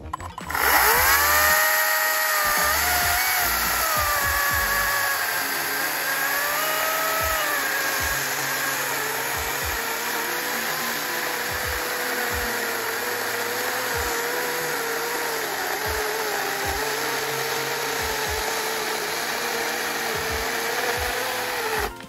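ECHO DCS-310 40V cordless electric chain saw cutting through a log. The motor and chain spin up with a high whine that drops in pitch as the chain bites into the wood, then run steadily under load until the saw stops near the end.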